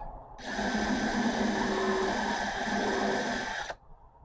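Craftsman cordless drill running at a steady speed for about three seconds, then stopping abruptly, as it drills a small hole through a wooden dowel.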